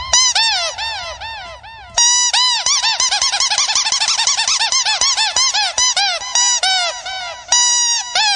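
Electronic chirping sound effect in a DJ remix: a pitched chirp that rises and falls, repeated about three times a second, then restarting and speeding up to several a second before starting over near the end.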